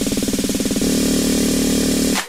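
Tribal house DJ mix in a build-up: a pitched stab repeated faster and faster in a drum roll, merging into a continuous buzz about a second in.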